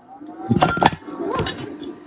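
A smartphone dropped and knocking against a hard surface: a couple of sharp clattering knocks in quick succession, about half a second to a second in.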